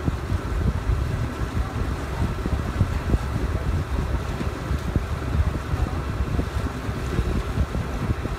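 Wind buffeting the microphone aboard a moving tour boat, a fluttering low rumble, with a faint steady hum of the boat's motor underneath.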